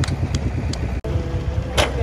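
Diesel engine of a homemade công nông farm truck chugging steadily with a low, even beat, cutting out for an instant about halfway through.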